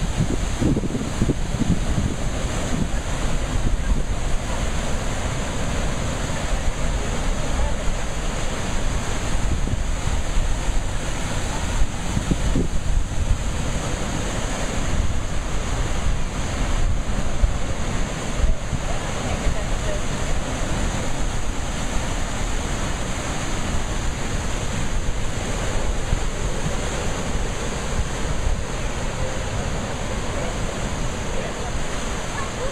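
Heavy sea surf surging and breaking over rocks in a steady, unbroken rush, with wind buffeting the microphone.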